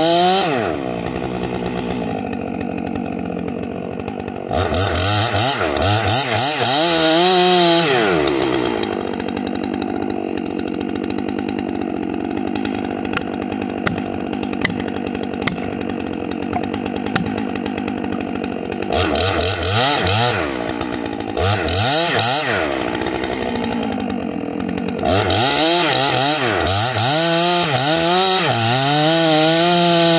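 Stihl MS 661 C-M two-stroke chainsaw with a 28-inch bar cutting into a large log under load, dropping back to idle between cuts and revving up again near the end. During the long idle in the middle come several sharp knocks as a plastic felling wedge is hammered into the cut.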